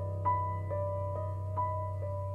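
Piano-like keyboard notes played one at a time in a slow repeating figure, about two notes a second, each ringing on over a steady low drone.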